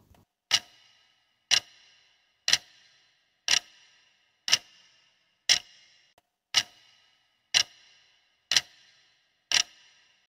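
Clock-tick sound effect counting down the answer time, one sharp tick each second, ten ticks in all, each with a brief ring.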